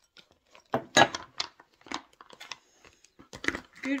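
A drinking glass is handled and set down on a cluttered wooden table: a series of short knocks and clinks, the loudest about a second in.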